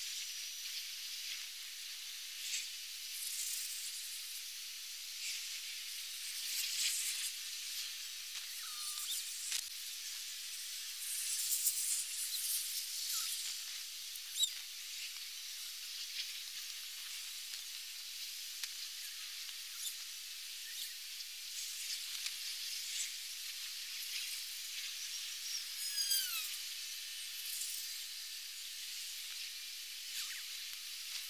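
Soap foam in buckets fizzing and crackling as its bubbles burst: a steady high hiss with scattered sharper crackles and clicks.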